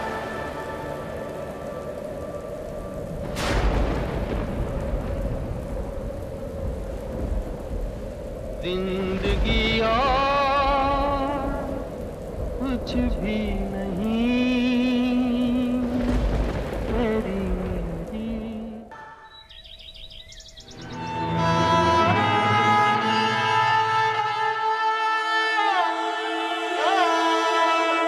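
Heavy rain pouring, with a single crack of thunder about three and a half seconds in. From about nine seconds a wavering melody of background music plays over the rain, drops away briefly near twenty seconds, then swells into a fuller passage.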